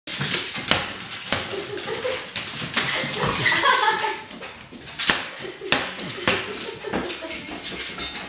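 A Corgi barking and whining at a large exercise ball, with a falling whine a little after three seconds in. Several sharp knocks are scattered through the sound.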